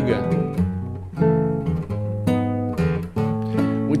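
A 1964 Giannini nylon-string classical guitar being fingerpicked, a slow run of chords ringing out one after another.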